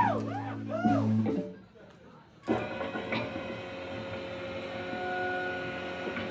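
Live rock band on a white Fender electric guitar, keyboard and vocals. A sliding phrase over held low notes breaks off about a second and a half in, leaving a short gap of near silence. The electric guitar then comes back in with a sudden struck chord that rings on quietly, with a thin held tone near the end.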